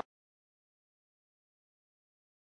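Complete silence: the sound track is empty, with the commentary cut off abruptly at the very start.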